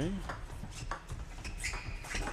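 Table tennis rally: the ball clicking off the rackets and the table, a few sharp ticks under a second apart.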